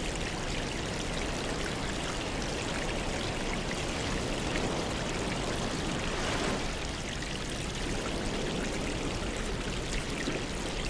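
Steady aquarium water noise: air bubbles rising and breaking at the surface, with water trickling and splashing, continuous without pause.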